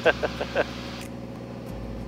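Steady low drone of a single-engine light airplane's engine and propeller heard inside the cabin, with a brief laugh at the start.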